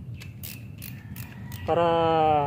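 A hand socket ratchet clicking in a quick, irregular series of short strokes as the oil filter cover bolts are tightened.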